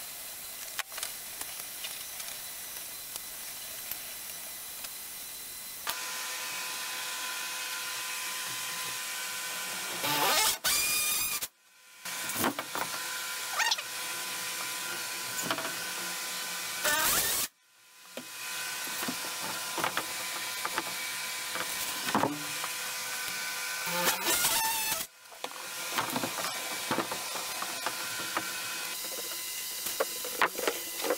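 Cordless drill/driver running in a few short bursts, driving screws into drywall, over the steady hum of a box fan.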